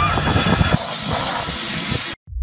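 A zipline trolley running along its steel cable as a rider sets off, a steady rushing whir mixed with wind on the phone's microphone.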